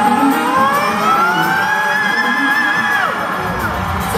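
A rock band playing live in an arena, recorded on a phone in the crowd, with fans cheering. A long held note slides up from about a second in, wavers, then drops away near the end.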